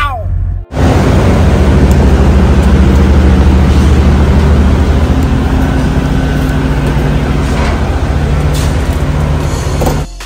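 Loud, steady diesel engine drone with a low hum, starting abruptly after a short gap under a second in and cutting off at the end.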